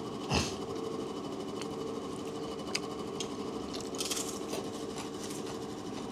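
A metal spoon clinking and scraping against a plate a few times during eating, the strongest clink about a third of a second in. Underneath is a steady mechanical hum of indoor machinery.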